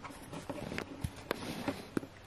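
Several light, quiet taps and clicks of a small plastic Littlest Pet Shop figure being set down and moved about on a wooden tabletop.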